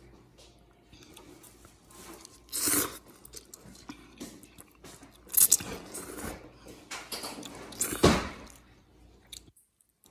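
A person eating close to the microphone: chewing and biting, with three loud noisy bursts about two and a half, five and a half and eight seconds in.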